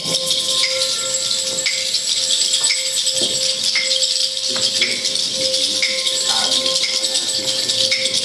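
Live jazz band passage carried by hand rattles shaken continuously over a single held tone that never breaks, with a light accent about once a second.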